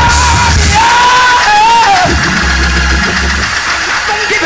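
Loud praise-break music with heavy bass and drums, a crash at the start, and a high voice yelling long wavering notes over it.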